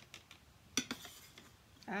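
Light clicks and taps of hard plastic crafting items on a plastic tray while the last of the clear embossing powder is shaken out over stamped cardstock. There are a few small ticks, with one louder clack a little under a second in.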